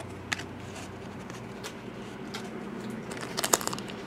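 Trading cards and foil card-pack wrappers being handled: a few light clicks and taps, then crinkling of the foil packs in the last second or so.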